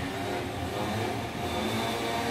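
An engine running steadily, a low hum with several tones, a faint higher whine joining in near the end.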